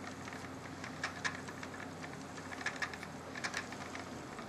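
Spinning wheel being treadled during short-draw spinning: quiet, irregular light clicks over a faint steady hum.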